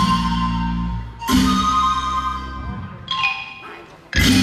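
An Isan pong lang band playing, with its wooden xylophones and percussion: a sharp ensemble stroke about a second in and another about three seconds in, each left to ring and fade, the music thinning out toward the end.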